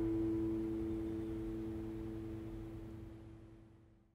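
An acoustic guitar's final strummed chord ringing out, its notes slowly dying away until they fade to silence right at the end.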